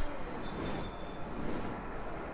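Street traffic noise with a thin, high-pitched squeal that holds for about a second and a half, over a steady rumble.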